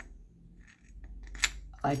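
A heavy antique cast-metal candlestick part being handled and turned over in the hands: a light click at the start, soft handling noise, then a sharper metallic tap about one and a half seconds in.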